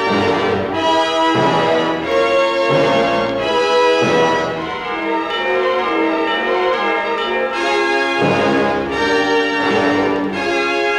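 Loud orchestral classical passage played from a worn mono vinyl record on a turntable's ceramic cartridge. Sustained chords with strong brass change every second or so.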